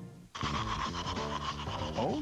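Background music ends, a short dropout follows, then a television commercial's soundtrack cuts in suddenly about a third of a second in: a dense scratchy, rasping texture over music with steady tones.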